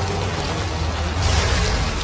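Cartoon soundtrack sound effects: a deep, steady rumble under a rushing hiss that swells briefly about a second in.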